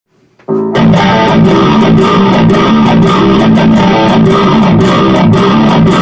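Distorted electric guitar playing a fast-picked heavy metal riff. It starts suddenly about half a second in and runs on at a steady high level.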